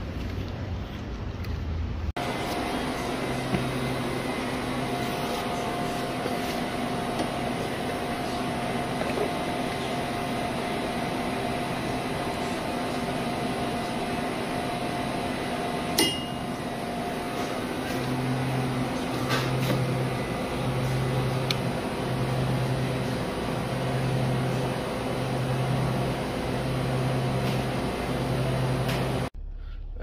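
Steady hum of shop appliances around a coffee-dispenser counter, with held tones and one sharp click about halfway. In the last third a low hum pulses about once a second. A brief outdoor rumble comes first, before the cut indoors.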